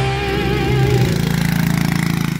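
Rock music with a held, wavering note ends about a second in. A small quad bike (ATV) engine then runs steadily at low revs with a fast, even pulse.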